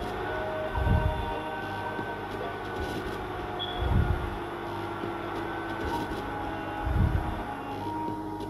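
End-credits film music with sustained held tones and a deep low swell about every three seconds.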